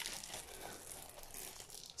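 Faint rustling and crinkling of the clear plastic sleeve around a diamond painting canvas as it is handled on the table.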